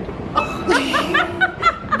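A woman laughing hard in a string of short, rapid bursts.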